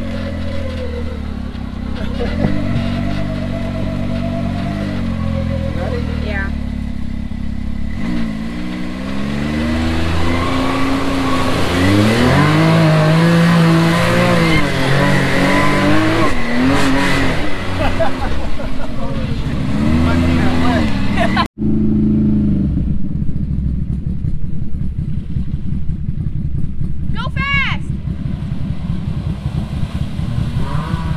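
Can-Am Maverick X3 side-by-side's turbocharged three-cylinder engine revving up and down as the machine drives through sand and water, heard close up from on board. After an abrupt cut about two-thirds of the way in, the engine is heard from further away, running with a rapid steady pulse as the machine ploughs through a creek crossing.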